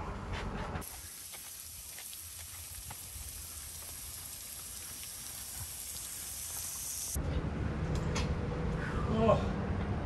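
A lawn sprinkler head shooting a jet of water, a steady high hiss that starts and stops abruptly; outdoor background with a brief voice before and after it.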